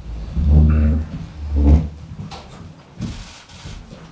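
A chair pushed back and scraping twice on the floor as a person stands up from a table. The scrapes come about half a second in and just before two seconds, the second short and loud, followed by a brief rustle about three seconds in.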